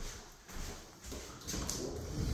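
Footsteps on a laminate floor with phone handling noise, and a few light knocks near the end.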